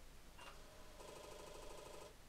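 Apple IIe restarting: a short click and beep about half a second in, then about a second of rapid, regular buzzing chatter from the floppy drive as it starts to boot.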